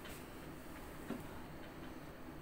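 A few faint clicks from a computer mouse as the lesson page is scrolled, over a low room hum.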